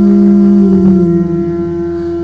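A man's voice singing into a handheld microphone, holding one long note at a steady pitch that grows somewhat quieter toward the end.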